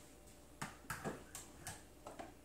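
About four faint, short taps spread over a little more than a second, over quiet room tone.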